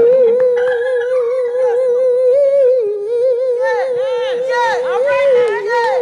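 A woman's singing voice holding one long note with an even vibrato. About halfway through, quick rising and falling runs sound above it.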